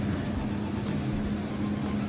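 Steady low machine hum with a constant drone, unchanging through the moment; no cutting or saw-motor sound stands out.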